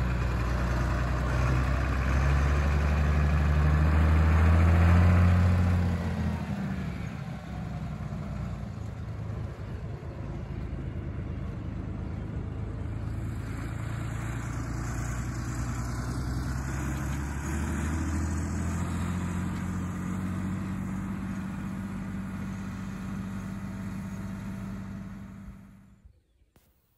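Farm tractor pulling a boom sprayer, its engine running steadily as it crosses the field. It is loudest for the first five seconds or so, then settles to a lower level as it moves away.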